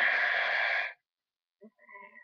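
A long, breathy hiss made with the mouth by a person, cutting off sharply about a second in. A faint spoken 'oh' follows near the end.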